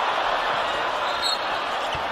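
Steady crowd noise in a basketball arena.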